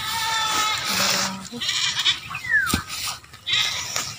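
A goat bleating, a high held bleat in the first second, with a sharp knock a little before three seconds in, likely a hoe striking the soil.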